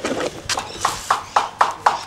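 Fingerboard clacking against cardboard and paper in a quick, even series of light clacks, about four a second.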